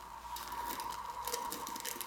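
Light handling noises: scattered faint taps and rustles as a hand reaches into an empty metal piston tin and its packaging.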